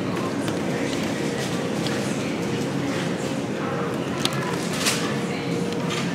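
Wire shopping trolley rolling across a supermarket floor: a steady rattling rumble from its wheels and basket, with a few sharp clicks about four and five seconds in and a steady hum beneath.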